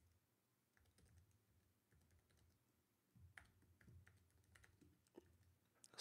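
Very faint computer keyboard typing: scattered keystrokes over near silence, with a few slightly louder clicks about three seconds in and again near the end.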